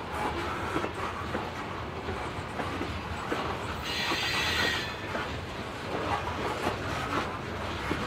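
Freight train of tank cars and covered hoppers rolling slowly past, steel wheels clattering and knocking over the rails. A brief high squeal from the wheels comes about four seconds in and lasts about a second.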